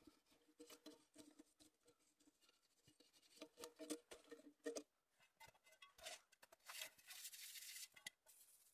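Stainless steel pot and mug scooping into packed snow: faint crunching and scraping, with a longer hissing scrape of snow near the end.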